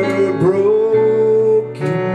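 Live acoustic song: a strummed acoustic guitar under a man's voice holding long notes, with a few hand-drum strokes.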